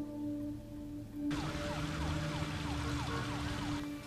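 A distant emergency-vehicle siren in repeated quick falling sweeps, about three a second, over outdoor city hum, under a low sustained music note. The siren and hum start about a second in and cut off abruptly just before the end.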